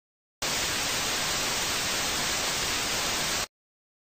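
A burst of steady static hiss, about three seconds long, that starts and cuts off suddenly.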